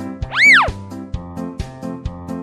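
Comedy background music with a steady beat. Just under half a second in, a loud cartoon 'boing' sound effect sweeps up in pitch and straight back down.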